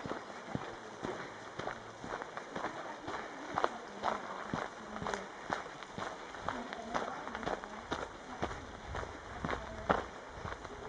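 Footsteps of a hiker walking along a trail, a steady rhythm of about two steps a second.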